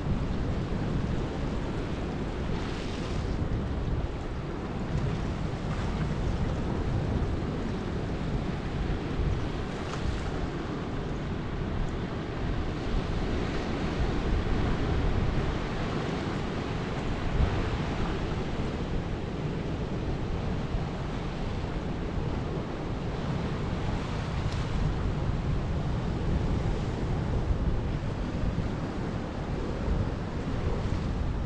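Ocean surf washing over black volcanic rocks, swelling and easing now and then, with wind buffeting the microphone in a steady low rumble.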